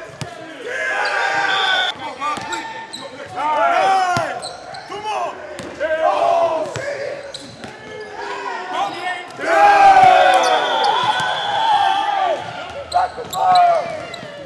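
Basketballs bouncing on a hardwood gym floor and sneakers squeaking, heard as many short rising-and-falling squeals between sharp thuds, all echoing in a large gym.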